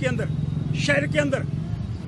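A man speaking to the press over a steady low background rumble.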